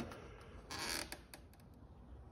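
A single short scraping stroke of a hand tool on a cedar strip, followed by a few light clicks.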